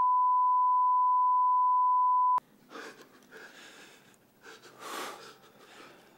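A steady electronic beep tone at about 1 kHz that cuts off suddenly a little over two seconds in. It is followed by faint room noise with breathing sounds, swelling briefly about five seconds in.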